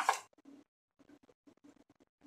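A brief rustle of a foil spice pouch as cinnamon is shaken out over a plate, followed by faint, scattered little rustles and taps.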